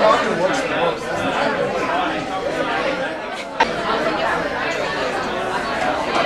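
Indistinct chatter of many people talking at once in a large room, a steady hubbub with no single voice standing out. A sharp click comes about three and a half seconds in.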